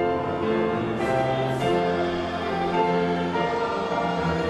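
Church congregation singing a hymn together, in slow held notes that change about once a second.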